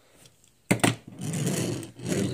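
A small die-cast metal toy car set down on a table with two sharp clicks, then rolled along the tabletop, its wheels making a steady whirring rumble for about a second.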